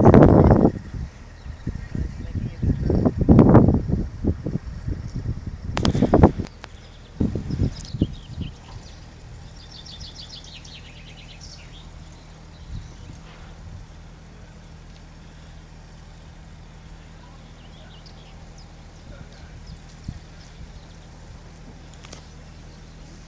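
Gusts of wind buffeting the microphone in loud, rumbling bursts for the first eight seconds or so, with a knock about six seconds in. After that the open field goes quiet, with a faint steady low hum and a short, rapid bird trill about ten seconds in.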